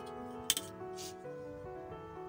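Background piano music playing a slow melody. About half a second in there is a sharp click, the plastic ruler being set down on the drawing paper, and a short scrape follows about a second in.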